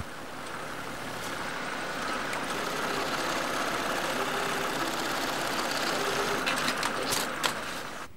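Industrial sewing machines running at speed, stitching nylon airbag fabric: a steady, dense mechanical noise that grows louder over the first few seconds and then holds.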